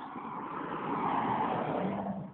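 A motor vehicle driving past close by, its road and engine noise swelling for about a second and a half, then fading.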